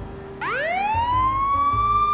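A siren sound effect: a single wail that starts about half a second in, rises quickly in pitch and then holds high, over a low repeating beat.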